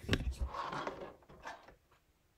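Handling sounds of a hot glue gun being picked up off the table and brought to the lace: a few knocks and clicks with rustling, dying away near the end.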